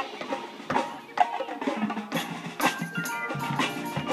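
High school marching band playing, with a run of sharp percussion strikes over held notes.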